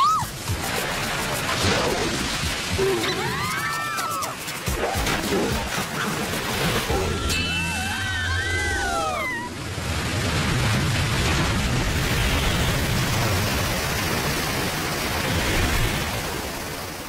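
Cartoon soundtrack of background music over rushing, sloshing water, with two bursts of high, squeaky dolphin calls: a short one about three seconds in and a longer one around eight seconds.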